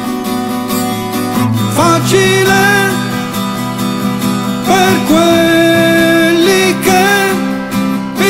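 Harmonica playing long held notes that slide up into pitch, over a strummed acoustic guitar. For roughly the first second and a half only the guitar chords sound, then the harmonica comes in with phrases.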